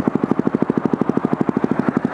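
Single-cylinder four-stroke dual-sport motorcycle engine running at idle or low revs, an even rapid beat of about ten pulses a second.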